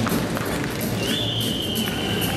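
Audience applauding and cheering as the jive music ends, with a long high whistle starting about halfway through.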